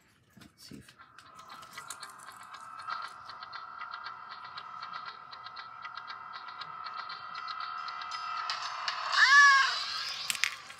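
Tinny electronic sound effect from the built-in sound chip of a lion-head Bath & Body Works PocketBac holder, still working: a steady buzzy tone that lasts several seconds, then a louder cry that rises and falls back near the end.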